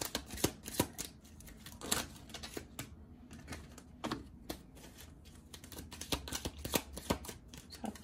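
A deck of tarot cards being shuffled and handled: a run of quick, irregular card flicks and taps, busier near the start and again near the end.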